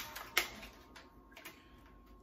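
Felt-tip markers being handled on a table: a sharp click about half a second in, then a few faint ticks of caps and markers.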